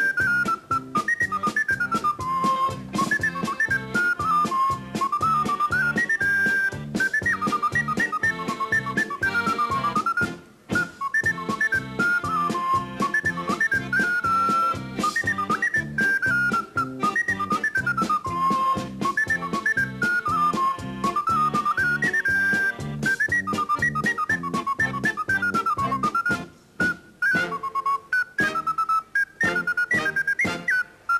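A very small ocarina playing a lively Romagnol polka, a quick high melody of short hopping notes, over a band accompaniment keeping a steady, even beat.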